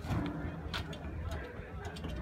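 Loaded manual pallet jack being pulled over concrete: a low rolling rumble from the wheels with irregular clicks and knocks from the jack and its load.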